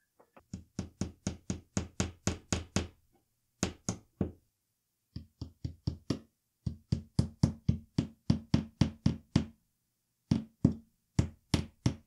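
Rhythmic percussive knocks, about five a second, in several phrases broken by short pauses, with a low steady tone under them that changes pitch between phrases.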